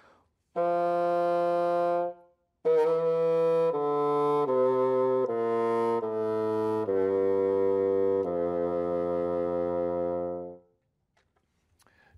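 A bassoon played on its double reed, the reed's vibration amplified through the full instrument: one held note, then after a short pause a descending run of about seven notes stepping down, ending on a longer low note.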